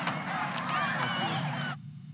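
Crowd in the stands of a football game, many overlapping voices shouting and cheering, with a couple of sharp claps. Near the end the sound cuts off abruptly as the tape recording stops, leaving only a low hum.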